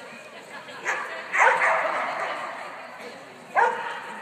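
Dog barking: two quick barks about a second in and another near the end, ringing on in a large indoor hall.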